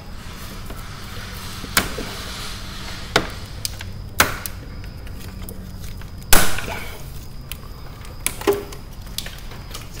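A few scattered sharp knocks and clicks of hands handling plastic and metal parts around a car's radiator and front end, the loudest about six seconds in, over a steady low hum.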